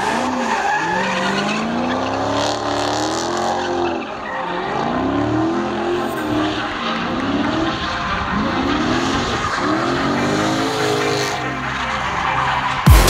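Dodge Charger Scat Pack's 6.4-litre HEMI V8 drifting: the revs rise and fall in repeated swells, about one every one to two seconds, over continuous tyre squeal and skidding.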